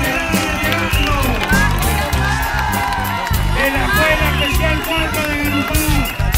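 Crowd of marchers singing together over a steady drum beat and percussion.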